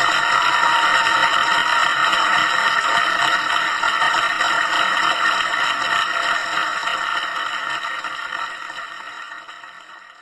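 Audience applause at the end of a live song, a steady wash of clapping that fades out over the last few seconds.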